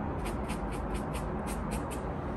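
Paintbrush scrubbing oil paint onto a canvas in quick back-and-forth strokes, about six a second, stopping near the end.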